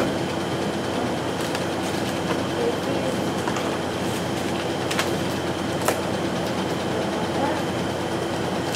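Steady machine hum in a shop, with a few sharp clicks and rattles of clear plastic fudge tubs being picked up and set down.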